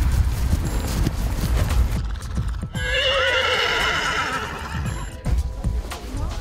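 Horses' hooves thudding on turf as a line of horses passes, then a horse neighs about three seconds in, one quavering call lasting about two seconds.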